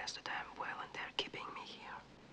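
Whispered speech: a line of film dialogue spoken in a whisper.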